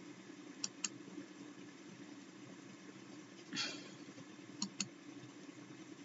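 A few faint computer mouse clicks in two quick pairs, about a second in and again near five seconds, over a low room hum, with a brief soft hiss in between.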